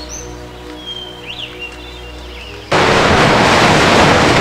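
Soft background music with sustained tones and a few faint high chirps. About two and a half seconds in, a sudden loud rush of surf takes over and drowns it out.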